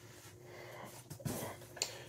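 Faint rustling and handling noise as a package is reached for and picked up, with a light click near the end.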